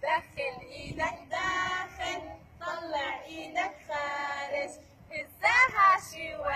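Young children singing together in a group, holding notes in short phrases. A louder voice slides sharply up and down near the end.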